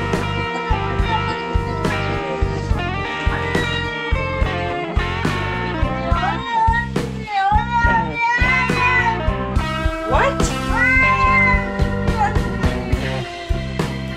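Background music with a steady beat, over a domestic cat meowing several times, its calls rising and falling in pitch, mostly in the middle of the stretch.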